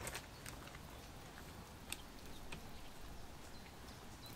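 Quiet handling of a large plush toy while thread is worked through it: faint rustling with a few soft clicks and ticks over a low steady background hiss.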